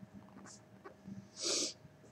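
Quiet room with a person sniffing: a faint short sniff, then a louder one about a second and a half in.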